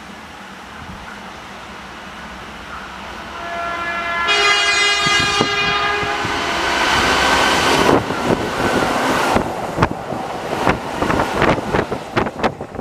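Keihan 2200-series electric train sounding its emergency warning horn, one held blast starting about four seconds in and lasting around three seconds. The train then passes close by, its wheels clattering over the rail joints in a quickening run of clacks near the end.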